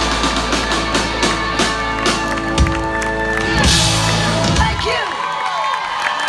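Live rock band with electric guitars and drums ringing out a held final chord, punctuated by drum hits. About five seconds in the band's low end drops away, leaving the crowd cheering and whooping.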